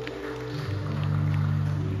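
Live worship band playing soft, held chords, moving to a lower chord under a second in.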